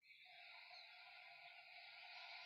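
A man breathing through the nose: one long, faint, steady breath during deep yogic breathing.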